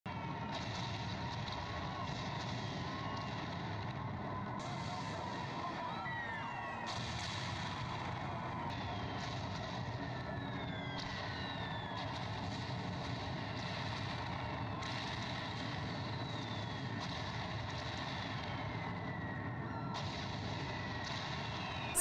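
Steady outdoor ambience with a siren sounding, its pitch sweeping downward again and again every second or two.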